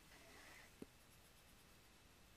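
Near silence: room tone, with a faint brief scratch near the start and a single soft click a little under a second in.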